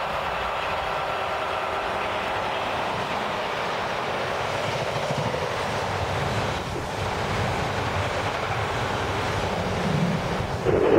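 A container freight train hauled by a Class 86 electric locomotive passing close by at speed: the locomotive goes by early on, then the container wagons keep rolling past on the rails with a steady heavy rumble that grows a little deeper and louder in the second half.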